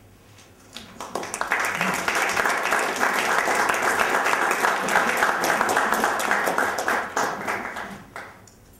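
Audience applauding at the end of a poem reading: the clapping starts about a second in, holds steady and stops near the end.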